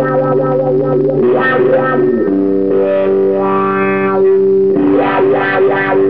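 Electric guitar played through foot-operated effects pedals, sustained chords ringing and shifting to a new chord every second or two.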